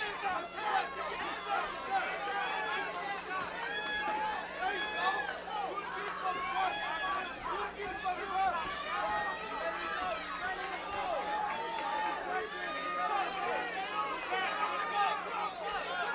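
Many overlapping voices of a boxing crowd talking and shouting at once, with no single clear speaker, over a steady low hum.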